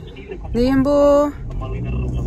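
A voice holds a drawn-out, sung-sounding note for about a second, the loudest sound here. After it comes the steady low hum of the car, heard from inside the cabin.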